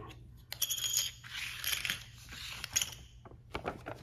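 A paper instruction sheet rustling and crackling as it is picked up and opened out by hand, followed by a few small clicks near the end.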